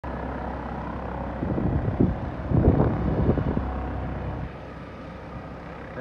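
Air ambulance helicopter running on the ground, a steady engine and rotor hum. It carries loud gusty buffeting through the middle, and its low drone drops away about four and a half seconds in.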